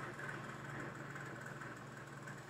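Steady low hum with a faint even hiss of background noise, unchanging throughout.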